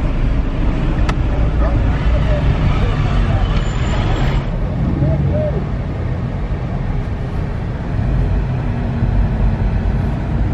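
Low engine and road rumble heard from inside a car moving slowly through traffic, with people's voices from outside.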